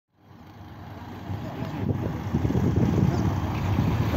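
Low, steady rumble of a river ferry's engines heard from the open vehicle deck, fading in over the first two seconds.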